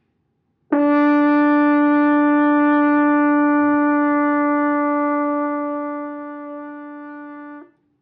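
Double French horn playing one long held note, the horn's written A (sounding concert D, around 290 Hz), fingered with the thumb and first and second valves. The note starts cleanly about a second in, holds steady in pitch for about seven seconds, grows somewhat softer over its last couple of seconds and stops cleanly just before the end.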